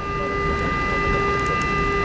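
Steady cabin noise of a McDonnell Douglas MD-80 taxiing with its engines at idle: a constant low rumble with several steady high whining tones over it.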